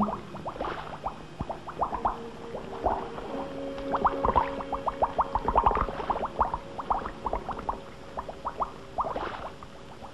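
A comic bubbling sound effect: a rapid, irregular patter of short plinks and pops over a faint held tone, thinning out near the end.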